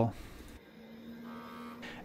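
Siemens PCD-5T Pentium PC running, its cooling fan and SCSI hard drive giving a faint steady hum, with a faint higher whine briefly after about a second.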